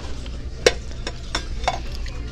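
A few light knocks and clinks of items being handled and set down in a wire shopping cart, the loudest about two-thirds of a second in, over a low steady hum.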